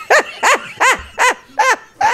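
A woman laughing heartily in a run of about five high-pitched 'ha' bursts, a little under three a second, each rising and falling in pitch.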